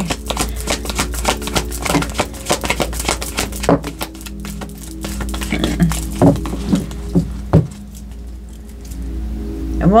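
A deck of oracle cards being shuffled by hand: a rapid run of soft card flicks lasting about seven seconds, then stopping. Soft background music with steady held tones plays underneath.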